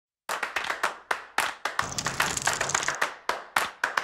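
Rapid, uneven run of sharp hand claps, several a second, as a percussive intro to a music track, with a brief soft swell in the middle.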